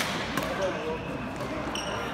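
A badminton racket hits the shuttlecock with a sharp crack at the very start, a lighter tap follows about half a second later, and near the end a shoe squeals briefly on the court floor.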